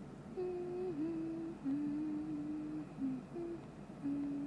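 A young woman humming a tune with closed lips: several held notes stepping lower, with short breaks between them and a brief higher note near the end.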